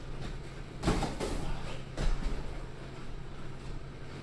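Boxing sparring: a few sudden thuds from gloved punches and footwork on the ring canvas, the strongest about a second and two seconds in, over a steady low hum.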